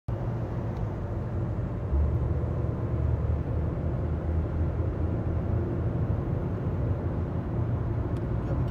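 Steady low road and engine rumble heard inside a car cabin at highway speed, a little louder from about two seconds in.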